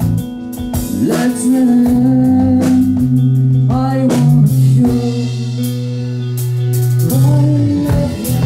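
Live band playing a song: a man singing over electric guitar, bass guitar, keyboard and drums.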